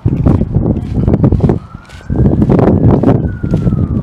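A faint wailing siren, its pitch slowly rising and then falling, under loud rumbling wind noise on the microphone.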